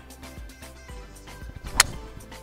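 A golf club striking a teed golf ball: one sharp crack near the end, over background music with a steady beat.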